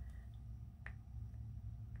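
A single short, light click from handling a foundation bottle, heard against a faint low hum of room tone.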